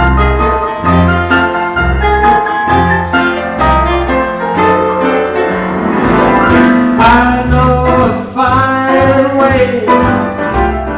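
Solo piano playing an upbeat song interlude, the left hand striking bass notes steadily on the beat under chords in the right hand.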